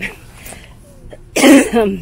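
A woman coughs once, a single sharp, loud cough about a second and a half in.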